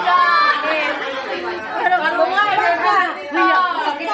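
Several people talking over one another: lively chatter.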